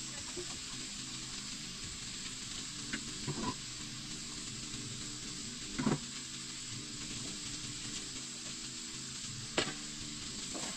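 Vegetables frying in a pan on a gas stove, a steady sizzle, with three brief knocks of cookware along the way.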